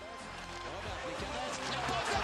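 Hockey game audio fading in and growing louder: voices mixed with music, with a few sharp clacks near the end.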